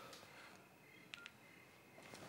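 Two quick beeps from a mobile phone keypad as buttons are pressed, close together about a second in, against near silence.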